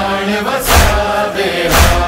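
Noha backing between verses: a sustained, chant-like hummed vocal chorus held on steady notes, over a heavy beat about once a second.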